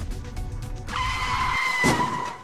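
Music with a low beat, then about a second in a car braking hard with a steady high-pitched squeal that runs to the end.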